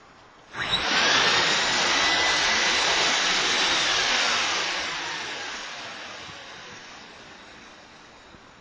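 IcePro inflatable roof-eave sleeve being activated to shed ice and snow. A loud rushing noise starts suddenly about half a second in, holds for a few seconds, then fades slowly. Inside it a faint whine rises and then falls in pitch.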